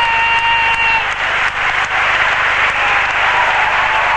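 Large concert crowd applauding and cheering, a dense steady roar, with two high steady whistle-like tones over it in the first second.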